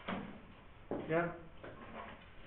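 Brief, quiet speech: a single short spoken syllable about a second in, after a short noise at the very start.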